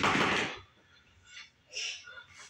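A sudden, loud, harsh burst of noise from a TV drama's soundtrack, lasting about half a second, heard through the television's speakers. A woman's heavy breaths follow near the end.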